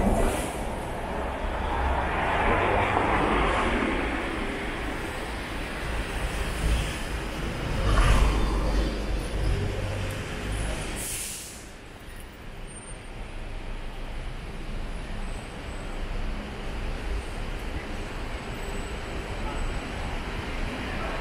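Street traffic: a city bus passing close by at the start, another heavy vehicle swelling past about eight seconds in, and a brief sharp hiss near eleven seconds, then quieter steady traffic hum.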